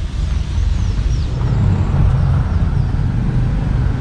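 Steady low rumble of outdoor background noise, with a few faint high chirps in the first second or so.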